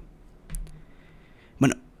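A short pause in a man's speech, holding only a soft brief click about half a second in, then the man says "bueno" near the end.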